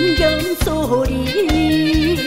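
A woman singing a Korean song over band accompaniment with a steady beat, ending on one long held note with vibrato.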